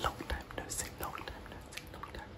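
A man's inaudible whispering close to the microphone: breathy, wordless whispered sounds broken by short clicks.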